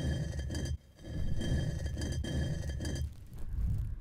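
Heavy stone secret door grinding open, a low rumble. It breaks off briefly just under a second in, then runs on until just before the end.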